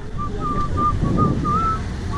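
Wind rumbling on the microphone, with a person whistling a tune of short, slightly wavering notes over it.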